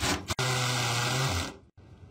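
Cordless drill boring into the keyhole of an old steel safe door: a short burst, a brief break, then about a second of steady drilling before it stops.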